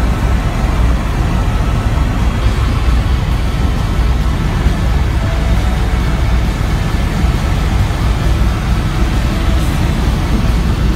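Loud, steady noise of a helicopter in flight, heard from inside the cabin. The engine and rotor noise is heaviest in the low end and holds unchanged throughout.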